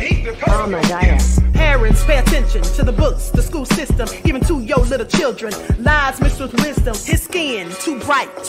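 Hip hop track with rapped vocals over a beat, a deep bass note sounding for about two seconds near the start.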